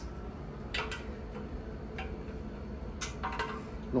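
A few light clicks and knocks, roughly a second apart, from a plastic-and-rubber truss stacker being gripped and fitted between aluminium truss tubes, over a steady low hum.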